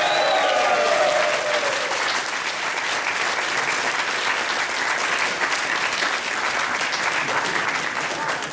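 Audience applauding: many hands clapping steadily. A voice rises over the clapping in the first two seconds.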